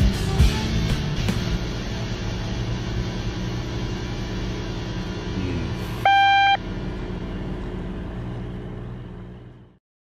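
Background music over a steady low sound, with one loud half-second electronic beep from the helm's engine control panel about six seconds in. Everything fades out shortly before the end.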